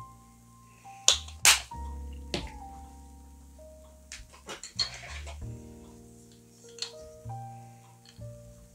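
Gentle background music with sustained notes, over which come a few sharp clicks and taps of a plastic acrylic paint tube being squeezed and handled on a wooden work table, the two loudest clicks a little after one second in.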